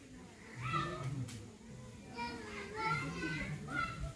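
Speech: people talking in short phrases, with a brief lull between them.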